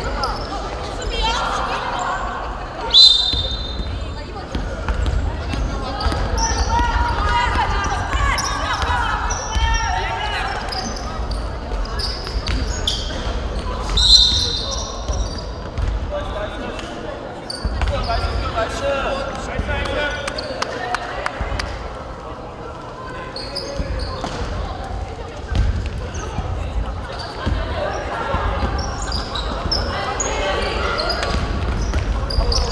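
Basketball game in a gym: a basketball bouncing on the hardwood floor and voices calling out on the court, with two short, loud referee whistle blasts, about three seconds in and again about fourteen seconds in.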